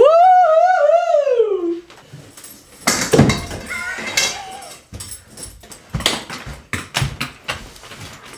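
A person's high, wavering wail, held for about two seconds and falling in pitch at the end. Then scattered knocks, thumps and rustles.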